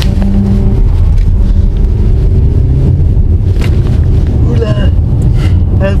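Mercedes-Benz E300de's four-cylinder diesel engine pulling under a hard standing-start acceleration in Sport Plus mode, heard from inside the cabin as a loud, low rumble.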